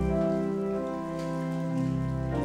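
Church organ playing slow, held chords over a deep pedal bass, the chord changing shortly before the end.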